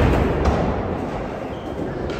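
Skateboard wheels rolling on a concrete skatepark floor: a low rumble that is loudest in the first half-second and then eases off, echoing in a large hall.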